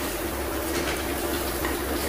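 Onion-tomato masala sizzling in oil in a steel kadhai, with a metal spatula scraping the pan now and then as it is stirred, over a steady low hum.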